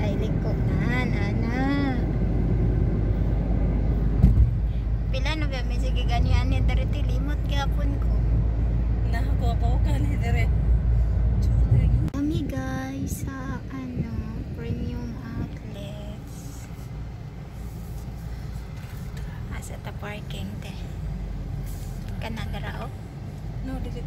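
Car road noise heard from inside the cabin: a heavy low rumble that eases about halfway through as the car slows into a parking lot. Voices sound over it now and then.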